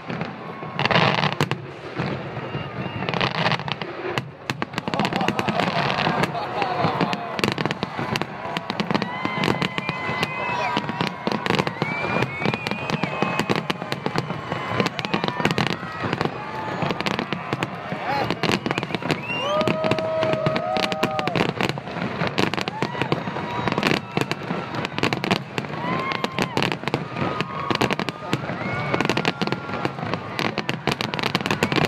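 Aerial fireworks display: shells bursting one after another, a dense run of sharp bangs that goes on without a break.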